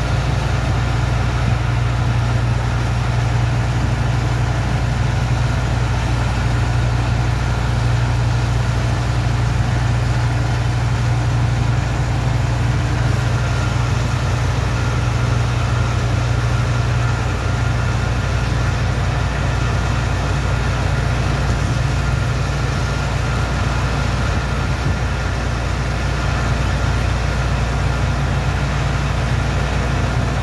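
Heavy engine driving a sand-dredging water pump, running at a steady low drone. A steady hiss over it comes from the high-pressure hose jet washing the sand into slurry.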